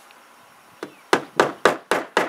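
Hammer driving a nail through J-channel trim into the shed's plywood wall. After a quiet first second come about five quick strikes, roughly four a second.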